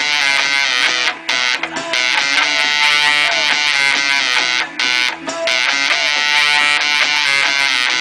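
Epiphone Casino semi-hollow electric guitar played through a 1968 Maestro Fuzz-Tone FZ-1B pedal and a Fender '57 Twin amp. It plays sustained, harsh fuzzed notes in a repeating riff, with brief gaps between phrases.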